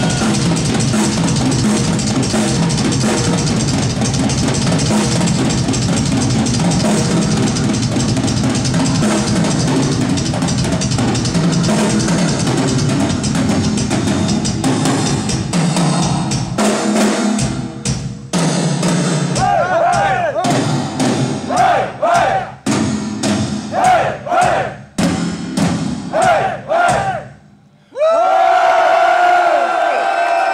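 Live rock drum kit solo: fast, continuous playing on bass drums, toms and cymbals for about the first 16 seconds, then breaking up into single loud hits with short gaps between them, each answered by shouts from the crowd. Near the end the drumming stops with a brief silence and the crowd breaks into sustained cheering.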